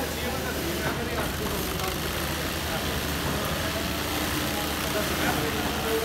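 Industrial sewing machines running with a steady mechanical hum, among them a Singer single-needle lockstitch machine stitching binding onto a glove cuff, with people talking in the background.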